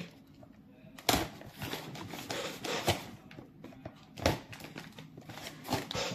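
Hands working at a well-taped cardboard parcel: sharp knocks on the box about a second in, again after about four seconds and near the end, with scraping and rustling of cardboard and packing tape between.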